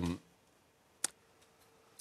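The tail of a man's drawn-out hesitation sound, then a quiet pause broken by a single short, sharp click about a second in.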